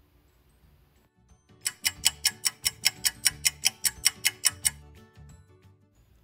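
Ticking sound effect of a clock or timer, about five quick ticks a second for some three seconds, over soft steady musical tones. It marks time passing while the yeast dough rises.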